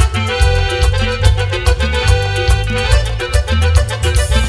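Live band playing an instrumental passage of a Latin dance song: a pitched lead melody over a steady bass and drum beat.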